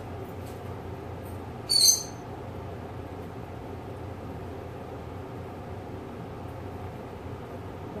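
Steady low room hum with one short, loud, high-pitched squeak or chirp about two seconds in.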